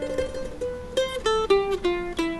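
F-style mandolin picked solo: quickly repeated picking on a note or two, then a short run of single notes stepping down in pitch.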